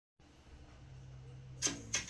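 Faint steady low hum, then two short sharp clicks, the first about a second and a half in and the second at the very end.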